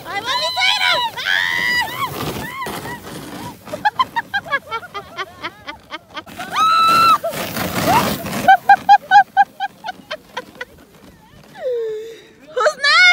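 Children shouting and squealing while sledding on snow, with a long high scream about six and a half seconds in and a quick run of short, laugh-like calls near the end. Brief rushing noise comes between the calls.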